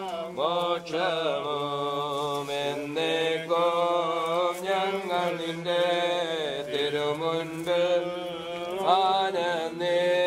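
Slow chanted funeral hymn, voices singing long drawn-out notes that glide gently between pitches.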